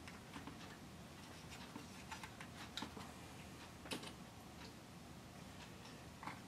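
Faint, irregular light clicks and taps of small wooden planks and the model's wooden hull being handled and worked by hand, the loudest tap about four seconds in.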